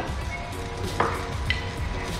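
A slotted metal ladle stirs through simmering hot pot broth and lifts cooked seafood out, with two light clicks of the ladle about a second in and half a second later.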